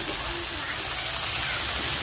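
Sliced sea snail meat sizzling steadily in hot oil in a wok.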